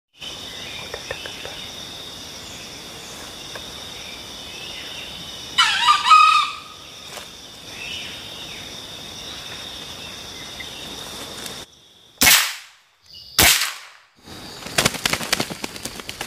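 A junglefowl rooster crowing once, loud and falling in pitch, over a steady high-pitched drone of forest insects. After a sudden cut to quiet, two short loud bursts follow, then a quick run of rustling clicks near the end.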